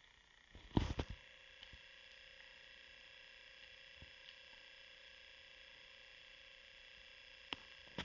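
Faint steady hum with a few thin high tones, after a short cluster of clicks about a second in; a single click near the end.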